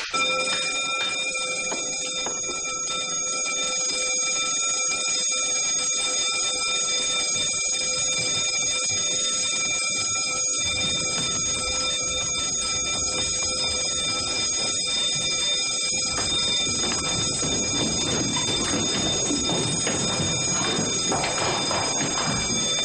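Fire alarm bell, set off at a wall call point, starts suddenly and keeps ringing loudly and steadily.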